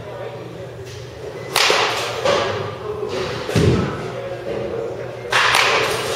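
Baseball bat hitting pitched balls: two sharp cracks of contact about four seconds apart, one about a second and a half in and one near the end, with a duller low thump between them.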